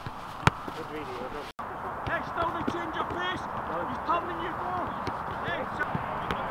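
A football struck sharply about half a second in, the loudest sound, with a lighter strike just before it. After that, several players shout and call out to each other across the pitch.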